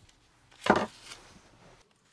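A single thud on the wooden tabletop about three-quarters of a second in, as something is set down while potato wedges are laid out on parchment paper.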